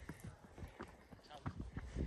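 Footsteps on a rocky mountain trail: irregular crunching clicks and scuffs of boots on stone and grit, over a low rumble of wind or handling on the microphone.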